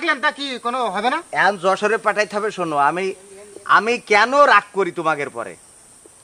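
Men talking in Bengali, in back-and-forth dialogue with short pauses, over a faint steady hiss.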